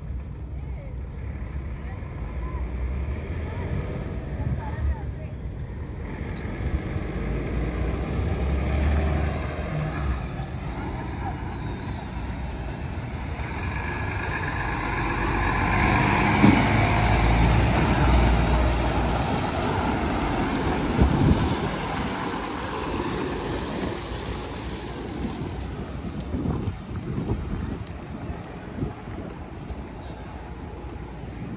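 A heavy truck passing close by on the road. Its engine and tyre noise builds to loudest about halfway through, then fades away. Wind buffets the microphone at times.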